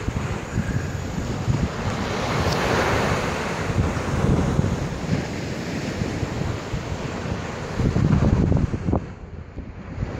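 Small surf breaking and washing up a sandy beach, with wind buffeting the microphone in gusts, strongest a little before the end.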